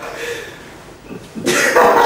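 Young men laughing, with a loud, breathy outburst about one and a half seconds in.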